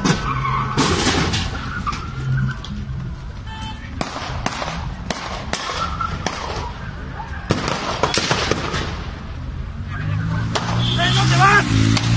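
Gunshots in a street shootout: a dozen or so sharp cracks at irregular intervals, over steady traffic noise, with a man shouting near the end.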